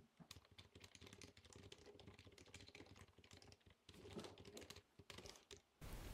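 Faint, rapid computer keyboard typing: a quick run of key clicks as a line of code is typed.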